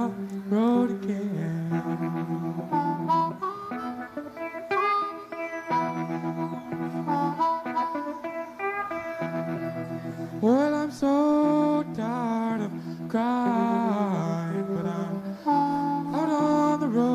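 A live blues-rock band playing a boogie, with a harmonica cupped to the microphone taking the lead in bent, wavering notes over electric guitar and a steady low accompaniment.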